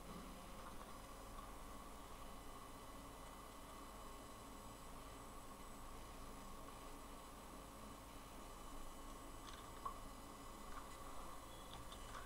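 Near silence: faint steady microphone hiss and room tone, with a few faint clicks near the end.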